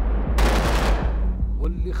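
Film battle sound effect: a sudden loud blast about a third of a second in, dying away into a deep rumble.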